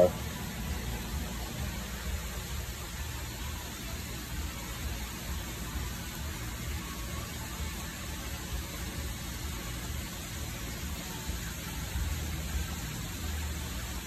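Steady low rumble with a soft hiss of moving water in a koi holding tub, with no distinct splashes or events.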